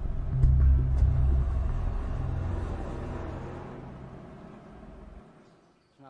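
A deep, low rumble that swells early on, then fades steadily and cuts off about five seconds in.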